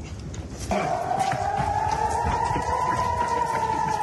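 Civil-defence rocket-alert siren starting abruptly about a second in: one long tone that rises slowly in pitch and then begins to fall, the warning of incoming rockets. A low rumble of movement noise runs underneath it.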